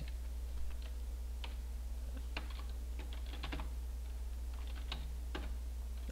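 Computer keyboard keys being typed: scattered, irregular keystrokes entering a short command, over a steady low hum.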